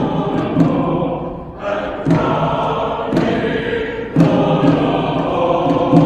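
Mixed church choir of men's and women's voices singing together in sustained phrases, with short breaths between phrases about two and four seconds in.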